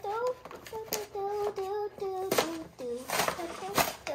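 A child singing a wordless tune to herself with long held notes, followed near the end by a few sharp crinkles and rustles of plastic toy packaging being pulled open.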